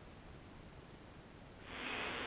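Faint hiss of an open space-to-ground radio loop between transmissions. About three-quarters of the way in, a steady, muffled hiss starts as the radio channel keys open just before a voice comes in.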